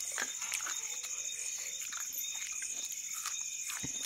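Eating sounds: chewing and a few short clicks as a hand mixes rice and curry on a steel plate, over a steady high-pitched hiss.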